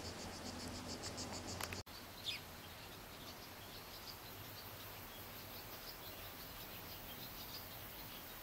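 An insect's rapid, evenly pulsed high buzz, cut off abruptly under two seconds in; after that, small birds chirp here and there, with one short falling call, over a steady faint high insect hiss.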